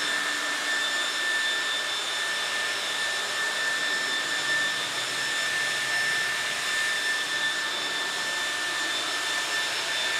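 Electric leaf blower, the higher-CFM unit, running steadily at full speed while blowing water off a wet car roof: a steady high motor whine over a rush of air.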